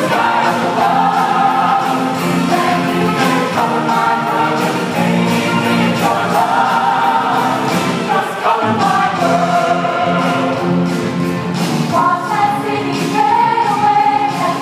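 Mixed-voice show choir singing in harmony, holding sustained chords that change every second or two.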